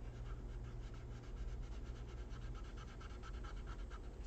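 Colored pencil rubbing hard on paper in rapid, even back-and-forth shading strokes.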